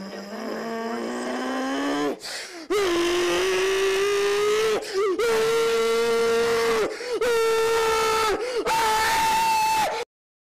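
A man's voice letting out a series of long, drawn-out yells, each held on one steady pitch. The first is quieter and slowly rises. Four louder ones follow with short breaks between them, climbing in pitch, and the last is much higher.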